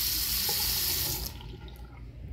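Water running from a faucet into a wall-hung bathroom sink, shut off abruptly a little over a second in.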